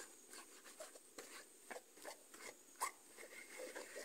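Faint, irregular rustling and light clicks of close handling, with one slightly sharper tick near the end.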